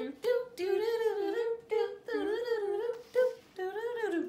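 A woman's voice humming a wavering tune in short phrases, imitating trumpets.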